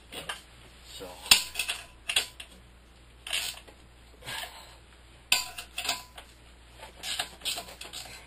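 Irregular metallic clinks and knocks from the steel clamps and bolts of a 36-inch Alaskan chainsaw mill as they are tightened onto a chainsaw bar, with two sharper knocks about a second in and past the five-second mark.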